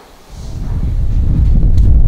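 Wind buffeting the microphone outdoors: a loud, low, blustery rumble that sets in about a third of a second in, after a moment of quiet room tone.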